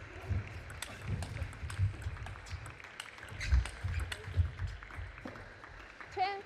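Table tennis rally: the ball clicks sharply off the rackets and the table at an irregular pace, with low thumps from the players' footwork on the court floor.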